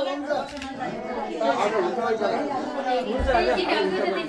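Several people talking at once: overlapping chatter in a room.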